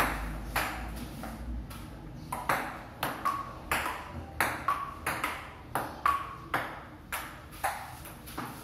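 A table tennis rally: the celluloid ball clicking off the paddles and bouncing on the wooden table, about two to three sharp hits a second, some bounces ringing briefly with a high ping.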